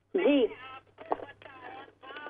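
Speech over a telephone line: a caller's voice, thin and cut off in the highs, with a steady low hum under it.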